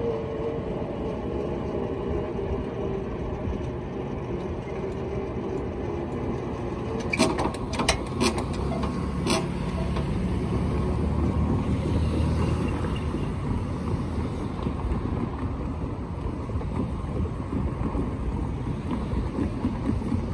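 Low rumble of a commuter train and a freight train rolling on, with road cars passing close by; the nearest car swells in about ten to thirteen seconds in. A few sharp clicks come about seven to nine seconds in.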